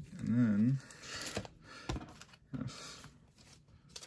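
A person hums briefly near the start. After it come soft rustles and a few light taps of a trading card being handled and slipped into a plastic card sleeve.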